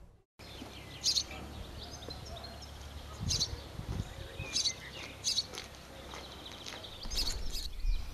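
Birds chirping in short, separate bursts every second or two over a low steady outdoor background, with a low rumble building near the end.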